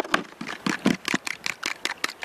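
A fork whisking egg batter in a bowl, clicking against the bowl's sides in quick, uneven strokes, several a second.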